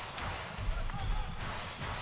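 Basketball being dribbled on a hardwood court, with sharp bounces at irregular intervals and short rising-and-falling squeaks of sneakers on the floor.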